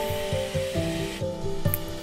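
Background music with a steady beat, over the whir of an electric hand mixer whipping cream in a stainless steel bowl. The whir stops a little over a second in.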